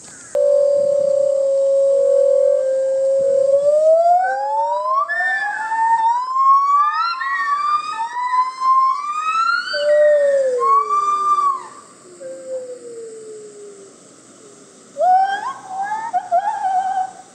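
A gibbon's loud whooping call: one long steady hoot, then a run of whoops that rise in pitch and come faster. They fall away and quieten about twelve seconds in, and a fresh burst of calls starts near the end.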